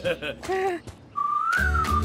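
A short cartoon character's wordless babble, then about a second in a whistled tune starts over a bass-heavy music bed: the show's opening theme.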